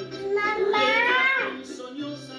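A young girl singing along over recorded backing music, holding one loud drawn-out note that rises and then falls in the middle.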